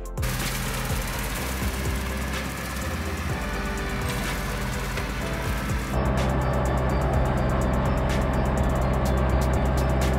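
Background music over a Ford 5000 tractor's engine running steadily as it works. About six seconds in the engine sound steps up louder and closer, with the music's beat ticking over it.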